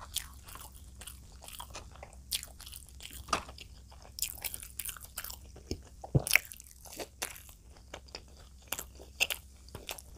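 Close-miked eating: biting into and chewing a piece of puri dipped in curry, with a steady run of crisp crunches and wet mouth clicks, loudest about six seconds in.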